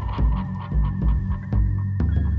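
Garage rock music from a full band: a pulsing bass with drum and cymbal hits over a steady held tone.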